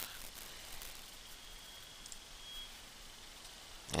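Faint steady hiss of microphone room tone, with a brief thin high whine about two seconds in.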